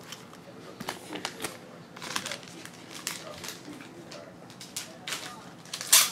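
Intermittent crinkling, rustling and light clicks of trading-card packaging and cards being handled, with a sharper click near the end.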